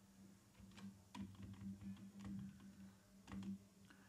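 A few faint, scattered computer keyboard keystrokes over a low steady hum, otherwise near silence.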